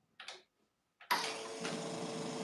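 La Spaziale two-group commercial espresso machine starting a shot: a faint click as its brew button is pressed, then about a second in the machine kicks in with a click and a steady hum as brewing begins.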